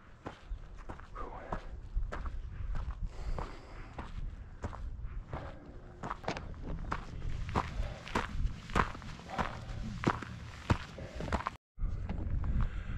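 Footsteps of a hiker walking on a dry dirt track, about two steps a second. The sound cuts out briefly near the end.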